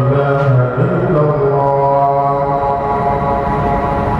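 A man's voice chanting a religious recitation in long, held notes, the pitch sliding between notes about a second in.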